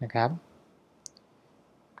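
A man's voice briefly at the start, then two faint, short clicks close together about a second in.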